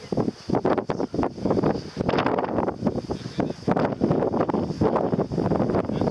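Wind buffeting the microphone, a rough rumble that rises and falls in uneven gusts.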